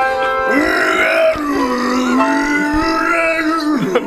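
A man's voice drawing out a long, wavering low note that slides in pitch, over steadily held instrument chords; it breaks off just before the end.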